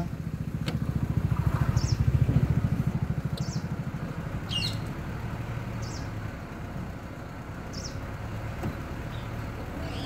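A vehicle engine idling with a low, throbbing note, louder over the first few seconds and then steady. Short bird chirps come every second or two.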